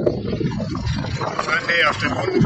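Wind rumble on the microphone of a camera moving with a road bicycle, with a person's voice, and a brief high-pitched sound with a wavering pitch near the end.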